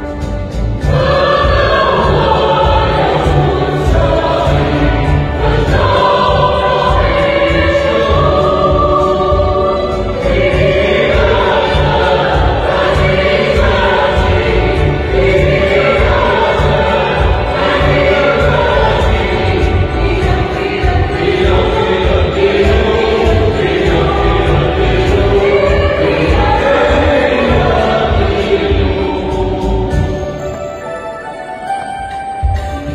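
Mixed choir of women and men singing a Christmas hymn together, over an accompaniment with a steady low beat.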